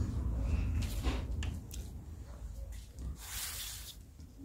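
A knife cutting into the side of a sponge cake: a few short scraping strokes, then a longer, louder scrape near the end.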